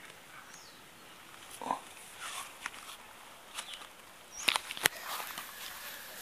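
Footsteps and handling rustle from someone walking outdoors between plant pots, a scatter of soft scuffs and light clicks with two sharp clicks about three-quarters of the way through.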